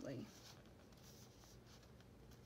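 Near silence: the tail end of a spoken word, then faint rustling of paper being handled and pressed against a journal page.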